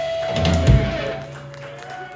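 Live rock band ending a song: a held electric guitar note, then one loud final hit from the drums and bass about three-quarters of a second in, left ringing out and fading.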